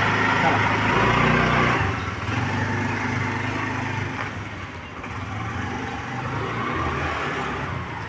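Honda Activa scooter's small single-cylinder engine pulling away under throttle. It is loudest for the first couple of seconds, then drops off and keeps running more quietly as the scooter moves away.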